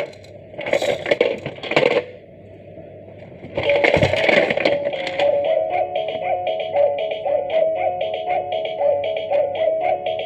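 Plastic baby activity cube's electronic sounds: two short bursts as its piano keys are pressed, then from about four seconds in a tinny electronic melody of quick, even notes that keeps playing.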